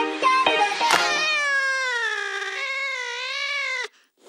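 Background music: a beat-driven track for about a second, then one long wavering high note held for nearly three seconds that cuts off suddenly just before the end.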